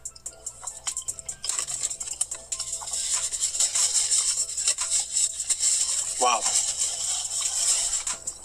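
Paper sandwich wrapper crinkling and rustling, a dense crackle that sets in about a second and a half in, after a stretch of background music with a beat.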